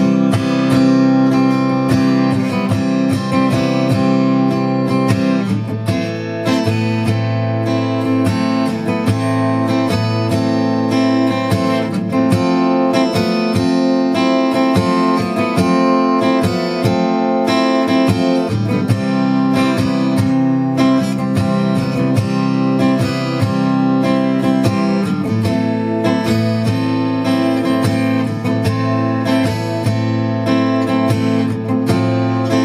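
Steel-string acoustic guitar strummed steadily through a repeating chord progression, recorded as a loop to solo over.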